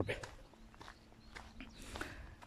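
Faint footsteps on a dry dirt farm track, a few soft steps spaced through a pause in talk.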